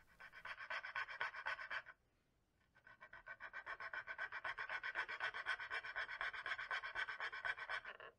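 Small file rasping back and forth on the edge of a plastic enclosure in quick, even strokes, cutting a channel for a cable to pass through. The filing stops briefly about two seconds in, then starts again.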